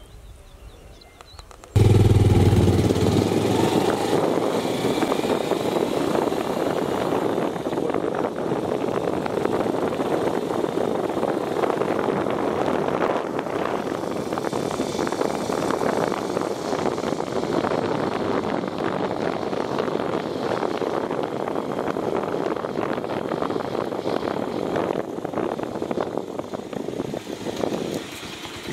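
Motorcycle on the move, heard from the rider's seat: its engine and riding noise run as a steady, noisy drone that comes in suddenly about two seconds in.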